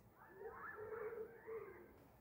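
A faint, drawn-out animal call with a slightly wavering pitch, lasting about a second and a half.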